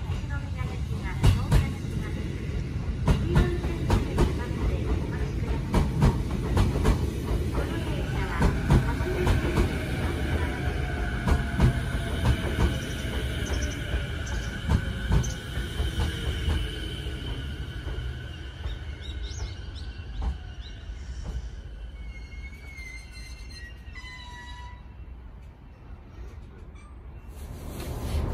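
JR East E233-5000 series electric train running into the station and braking: its wheels knock over the rail joints with a heavy rumble. As it slows, a steady high squeal and a falling motor whine set in, and the sound dies away as the train comes to a stop.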